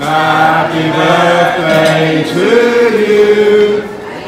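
Men's voices chanting or singing together in long held notes, the pitch stepping up about halfway through to a long sustained note: restaurant waiters singing as a cake is brought to the table.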